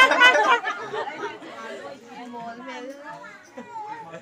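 Group chatter: several people talking over one another, loud with laughter in the first half-second, then quieter talk.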